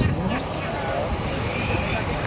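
Radio-controlled drift cars running on an asphalt track, with a faint high motor whine near the end, over crowd voices.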